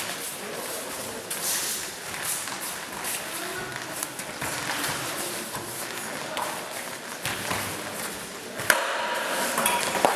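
Steel swords and bucklers clashing in a sword-and-buckler bout: scattered clicks and knocks of blade on blade and blade on buckler, with one sharp loud clash near the end.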